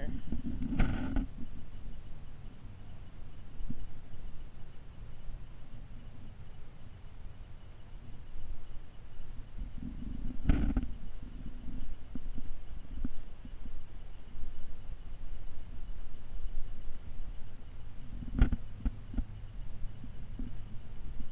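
Low, uneven rumble of handling and wind noise on the camera microphone, broken by a few brief bumps: one about a second in, one near the middle and one near the end.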